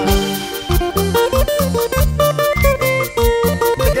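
Huayno band playing an instrumental passage: a plucked guitar melody over bass and a steady drum beat. A voice starts speaking at the very end.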